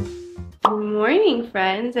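Background music fades out, then a sharp click at a cut, and a woman begins speaking.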